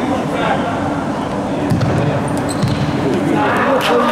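Voices of players and onlookers echoing in an indoor sports hall, with a few sharp thuds of a futsal ball being kicked and bouncing on the hard floor, the loudest near the end.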